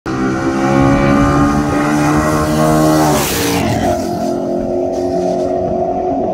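Two cars at full throttle in a street roll race. The engine note climbs steadily, then drops sharply as they pass about three seconds in, with a rush of wind and tyre noise. A steadier, fading drone follows as they pull away.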